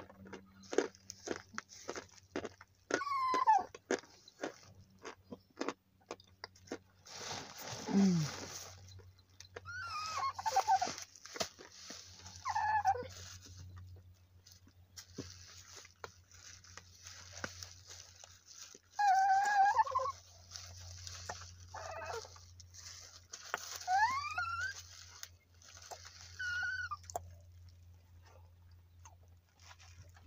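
Cornstarch crunching between the teeth as it is chewed, a quick run of crisp crunches through the first several seconds. A small dog whines on and off through the rest, in short cries that rise and fall in pitch.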